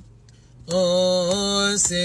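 A male cantor chanting a Coptic liturgical hymn unaccompanied: after a short breath pause, one long, steady held note begins under a second in.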